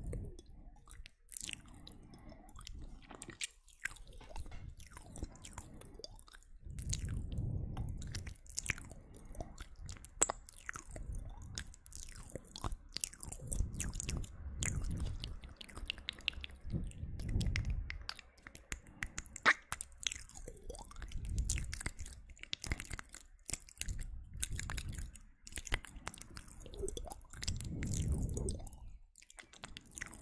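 Close-miked ASMR mouth sounds: many sharp wet clicks and smacks of lips and tongue, with low muffled swells every few seconds.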